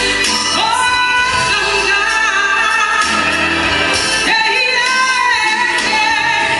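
A woman singing a gospel song live into a handheld microphone over a backing band, gliding up into long held notes twice.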